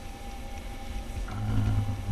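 Meeting-room background: a low steady hum, with a low voice murmuring from about a second and a half in.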